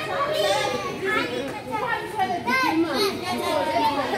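Young children's voices chattering and calling out as they play and run about in a large hall.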